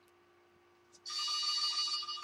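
Near silence, then about a second in a quiet, steady high-pitched tone made of several pitches held together, lasting a little over a second.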